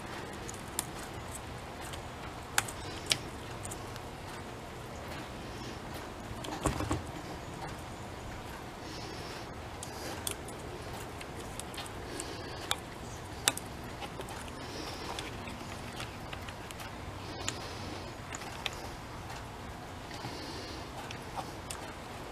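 Scattered light metallic clicks and rattles of a chainsaw chain and bar being handled by hand, over a faint steady background hum.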